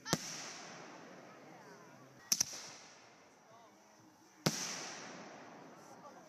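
Aerial fireworks bursting overhead: a sharp bang at the very start, a quick double bang a little over two seconds in, and another bang about four and a half seconds in, each trailed by a fading echo.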